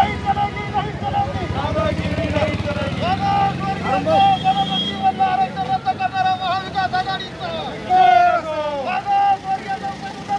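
Men's raised voices speaking and calling out over a steady low rumble of road traffic.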